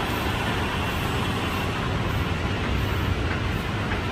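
Steady city street ambience: a continuous low traffic rumble with no distinct events.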